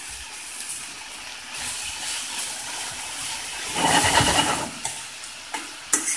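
Saltfish, mushrooms and kale sizzling as they sauté in oil in a stainless steel frying pan, a steady hiss that swells for a moment about four seconds in as the food is stirred.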